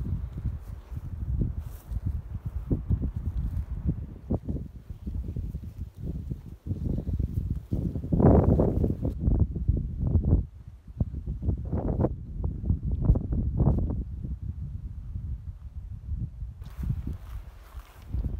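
Wind blowing across a phone's microphone: an uneven low rumble that swells and drops in gusts.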